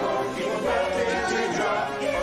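A chorus of voices singing a musical-theatre ensemble number together, holding a sung line without a break.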